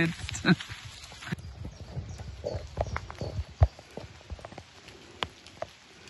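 Footsteps on a wet gravel path: a run of uneven steps, the loudest one a little past halfway.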